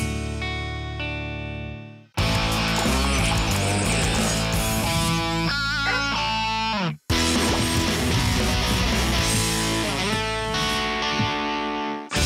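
Three short guitar-led TV channel ident jingles played back to back, each ending in a brief drop to silence, about two seconds in and again about seven seconds in.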